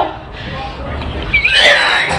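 A woman gagging and retching, a strained, animal-like vocal heave that peaks loudly about two-thirds of the way in, from the stench of a blocked toilet she is emptying.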